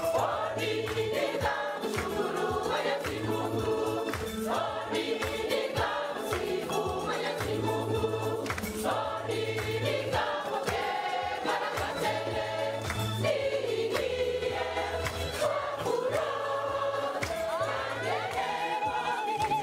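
A church choir singing a lively gospel hymn in parts over a steady bass line.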